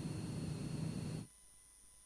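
Faint recording hiss with a low hum, left over after the narration, cutting off abruptly a little over a second in; near silence after that.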